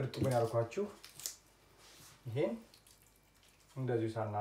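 A man speaking in short phrases, with pauses between them.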